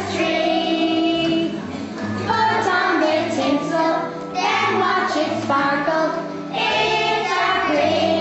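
A group of young children singing a song together over a musical accompaniment with steady held bass notes.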